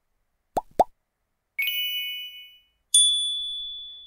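Edited-in sound effects for an animated on-screen 'Follow' button being clicked: two quick pops, then a bright chime about a second and a half in, and a single ding near the end that rings out slowly.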